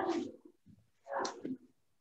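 Brief muffled noises from a person moving and sitting down close to the microphone, in two short bursts: one at the very start and one about a second in.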